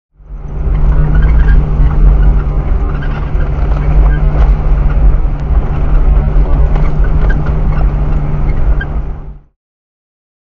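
A 4WD driving slowly over a rough, sandy bush track, heard from inside the cabin: a steady engine drone and low rumble, with repeated knocks and rattles as the vehicle bounces over the ruts. It fades in just after the start and cuts off shortly before the end.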